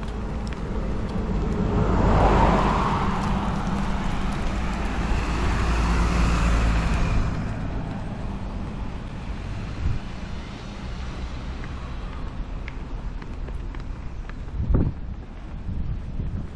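A car passing on the road close by: a rushing tyre-and-engine noise that swells about two seconds in, holds for several seconds and fades away by about eight seconds, leaving a low steady outdoor traffic noise.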